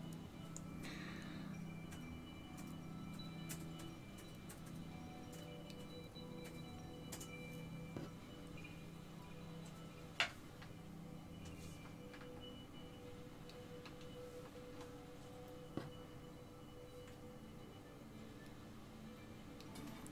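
Faint background music, with a few sharp small metallic clicks from pliers twisting open tiny aluminium jump rings; the loudest click comes about ten seconds in.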